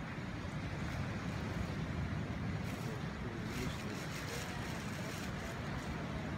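Steady low rumbling outdoor background noise, even in level throughout.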